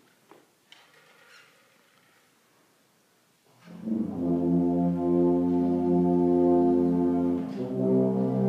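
A quiet room with a few small clicks, then about three and a half seconds in a brass ensemble comes in with a held chord, moving to a new chord near the end.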